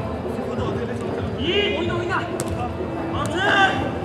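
Players shouting to each other during a five-a-side football game: two short high-pitched calls, one about a second and a half in and one near the end. Between the calls there are two sharp kicks of the ball, over a steady background of pitch noise.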